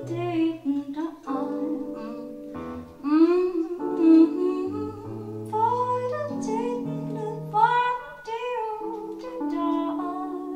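A woman singing a slow jazz song live into a handheld microphone, several times sliding up into long held notes, over sustained chords.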